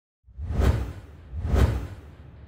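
Logo-animation intro sound effect: two whooshes about a second apart, each with a deep low boom under an airy sweep, fading out at the end.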